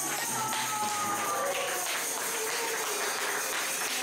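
Live worship music tailing off: a jingling, tambourine-like beat at about four strokes a second under a voice holding long, slowly falling notes.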